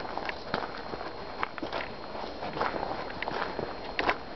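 Footsteps on gravelly, grassy dirt ground, a few irregular short scuffs and clicks each second.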